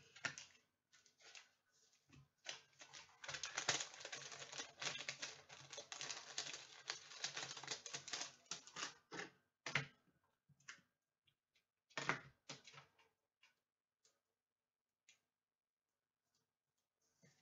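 Trading cards being handled and slid into plastic card sleeves: a faint, crinkly, clicky rustle of plastic that runs dense for several seconds, then thins to scattered clicks.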